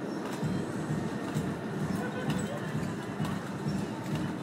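Background voices chattering, with the clatter and clicks of ride-on mechanical walking pony toys moving over a concrete floor.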